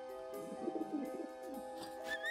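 Cartoon bird giving a short wavering coo, like a pigeon, over soft background music of held notes.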